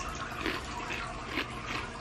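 Someone chewing a crunchy baked hot Cheeto, with faint irregular crunches.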